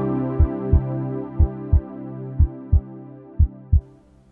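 Programme-intro music: a sustained chord slowly fading out under a heartbeat sound effect, a double thump about once a second.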